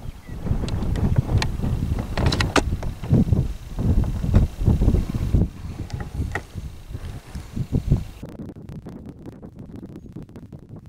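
Wind buffeting the camera microphone in irregular gusts, with a few short crackles about two to three seconds in; the buffeting dies down after about eight seconds.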